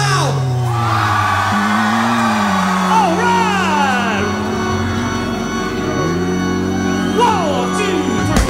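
Rock song in a sparse, drumless passage: long held low notes under high sliding notes and vocal whoops that fall in pitch, once about three seconds in and again near the end.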